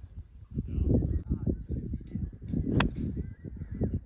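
A single sharp crack of a golf club striking the ball, about three-quarters of the way in, over a steady rumble of wind on the microphone.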